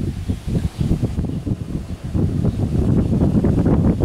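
Wind buffeting the microphone: an uneven low rumble, stronger in the second half.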